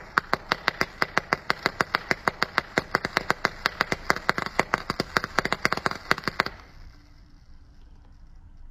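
Vape coil on a rebuildable dripping atomizer being fired, e-liquid crackling and popping on the hot coil in a rapid train of sharp pops, about six a second, over a low hiss. The popping stops about six and a half seconds in, leaving only a faint hiss.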